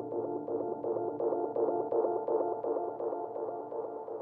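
Psybient downtempo electronic music: a busy synthesizer figure of short notes repeating in the middle range, with faint ticks above it.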